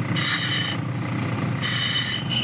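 Gold dredge's engine and pump running steadily on the river, with two short high-pitched steady tones laid over it, one near the start and one near the end.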